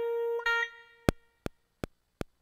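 A held synthesizer keyboard note rings steadily, followed by a second short note that fades away. Then four sharp, evenly spaced clicks, about three a second, come from the sampler's metronome counting in before the next pass of the beat.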